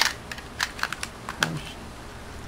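Irregular clicking of computer keyboard keys, about seven sharp clicks in the first second and a half.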